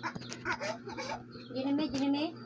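A young child's high-pitched voice making short wordless calls that rise and fall in pitch.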